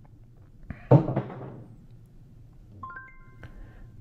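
A soft thump about a second in, then a short electronic chime of four quick rising notes near the end.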